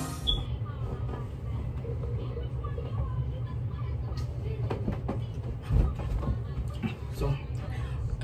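A faint voice in the background over a steady low rumble, with a few soft knocks.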